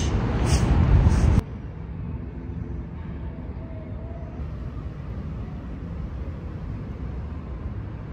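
A loud low rumbling noise that cuts off suddenly about a second and a half in, followed by a quieter steady low rumble with a faint hum.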